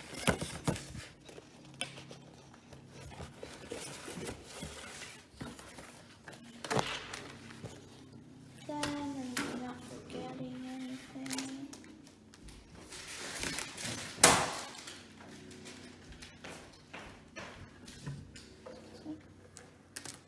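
Scattered knocks and taps of handling on a table and a cardboard box, the loudest a single thump about 14 seconds in.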